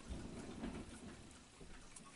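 Faint, soft rustling of hands moving and turning close to the microphone, over quiet room noise.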